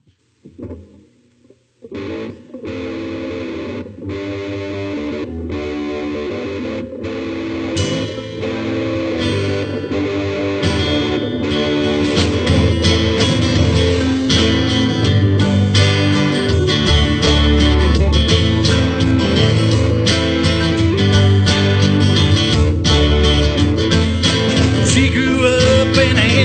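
Live band starting its song: guitar chords begin about two seconds in, the music grows louder around eight seconds as more instruments come in, and from about twelve seconds the full band with drums, guitars and keyboard plays on steadily.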